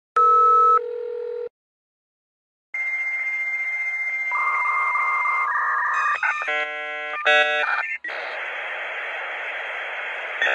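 Dial-up modem connecting: a couple of short telephone tones, a pause, then the handshake, with a steady high answer tone, a few shifting tones, a burst of rapid warbling tones around the middle, and a steady hiss from about two seconds before the end.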